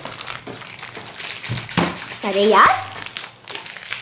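A plastic snack wrapper crinkling and crackling in irregular bursts as it is gripped and tugged with the teeth to tear it open. About two seconds in, a short vocal sound rises in pitch.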